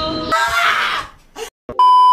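Karaoke singing breaks off into a burst of static, a brief dropout, then a loud steady high test-tone beep, the kind that goes with TV colour bars. It is an edited glitch transition effect.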